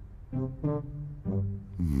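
A cartoon pig's low, pitched 'mm' hums, repeated several times in quick succession as an edited loop, with a longer hum falling in pitch near the end.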